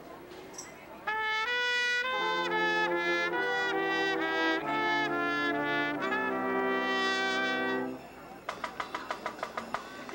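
Brass ensemble of trumpets and trombones playing a slow intro of held chords, moving to a new chord every second or so. About eight seconds in the chords stop and a quick run of sharp, even taps follows.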